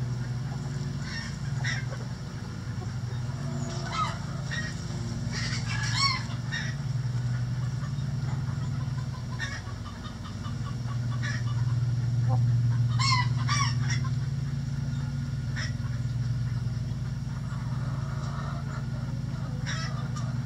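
Backyard chickens giving short calls several times, the clearest about six and thirteen seconds in, over a steady low hum.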